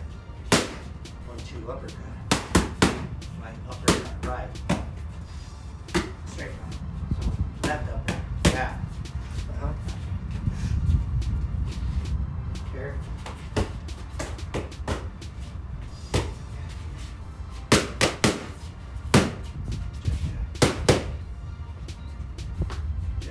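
Gloved punches smacking into focus mitts, thrown by a boxer in 1v1 Fight Gear Pro Trainer Elite training gloves. The sharp smacks come in quick combinations of two or three, with a lull in the middle before another run of combinations near the end.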